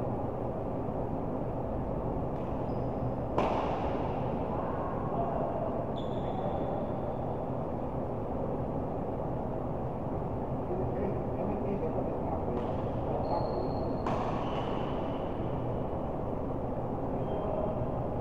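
Indoor badminton play: two sharp cracks, about three seconds in and again about fourteen seconds in, with a few short high squeaks of court shoes on the mat, over a steady hum of hall noise.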